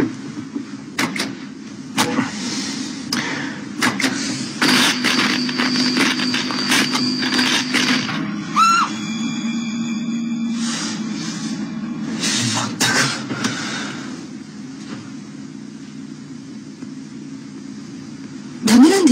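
Tense film soundtrack: a low steady drone with scattered knocks and clicks, a thin high tone held for a few seconds, and a short rising tone about halfway through. It grows quieter over the last few seconds.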